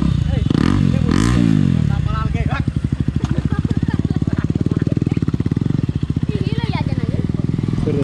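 KTM Duke 250's single-cylinder engine idling just after being started, with one quick rev rising and falling about a second in, then a steady, evenly pulsing idle.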